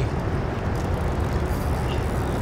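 Steady low rumble of wind buffeting the microphone over the wash of choppy river water.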